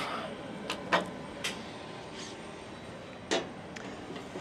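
A few short sharp clicks and knocks, the loudest near the end, as the hose of a hydraulic hand pump is uncoupled from the thrust-reverser C-duct and handled.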